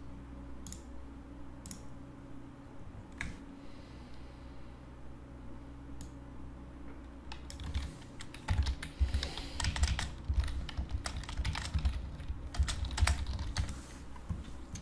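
Typing on a computer keyboard: a few isolated clicks at first, then a quick, dense run of keystrokes from about halfway in.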